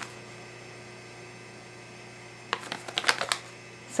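Quiet room tone with a steady hum, then about two and a half seconds in a short run of rustles and clicks as the paper and plastic toy packaging is handled.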